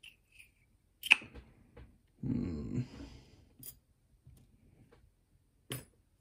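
Handling of a disassembled brass lock cylinder and small steel tools: a few sharp metal clicks, the loudest about a second in and another near the end, with a brief louder rustling scrape around the middle.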